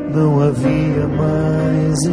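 A man singing a slow song in long held notes, with guitar accompaniment.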